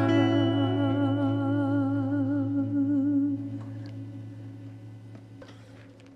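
A woman's voice holds the song's final note with vibrato over a ringing electric-guitar chord; the voice stops about three seconds in and the guitars fade away, with a few faint clicks near the end.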